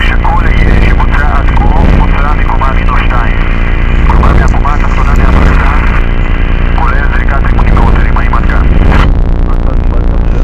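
Power electronics noise music: a loud, distorted wall of noise over a steady low drone, with a heavily distorted voice in bursts through it.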